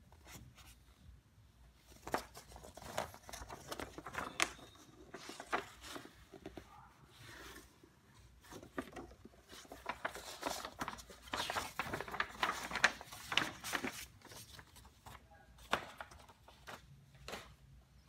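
A large folded paper poster being unfolded and handled: irregular crinkling and rustling of the stiff paper, with small crackles, busiest in the middle stretch.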